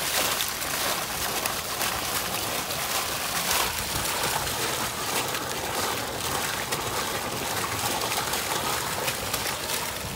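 Fountain water splashing steadily into its basin, a continuous hiss of falling water.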